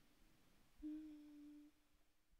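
Very faint closing note of the music: a single soft, steady pitched tone that swells briefly about a second in, then thins away.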